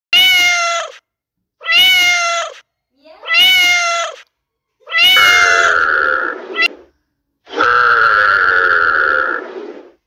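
A domestic cat meows three times, each meow short and falling in pitch at the end, with a fourth meow about five seconds in. From there a different, longer sound takes over: a steady high tone over a low wavering note, heard twice.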